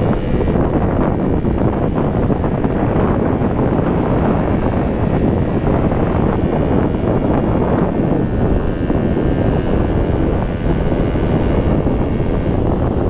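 Steady wind rush buffeting a helmet-mounted microphone on a KTM Duke motorcycle riding at road speed, with the engine's note buried under it.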